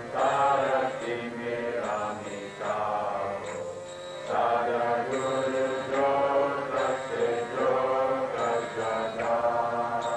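Devotional chanting of a mantra, sung in repeated phrases a second or two long over a steady drone.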